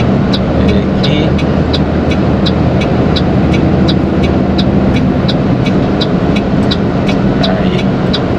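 Inside a truck cab, the diesel engine of a Mercedes-Benz Atego runs steadily in slow traffic while the turn-signal indicator ticks evenly, about two and a half clicks a second, signalling a move into the right lane.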